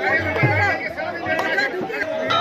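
Crowd of voices, singing mixed with chatter, over a couple of deep hand-drum strokes whose pitch drops after each hit, typical of devotional kirtan.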